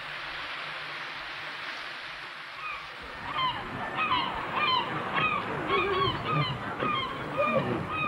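A steady rushing hiss, then from about three seconds in many short, harsh gull calls in quick succession, several a second, over outdoor background noise.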